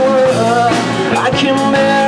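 Live rock band playing loudly: electric guitars over a drum kit, with no clear singing.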